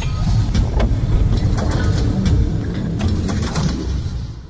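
Intro sound effects: a heavy, steady low rumble with several sharp hits and swishes scattered through it, beginning to fade near the end.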